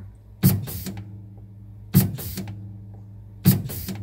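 YZ Systems NJEX odorant injection pump stroking three times, about a second and a half apart, each stroke a short sharp burst, over a steady low hum. Each stroke comes from a press of the test button and primes the pump after a purge, drawing odorant down from the verometer.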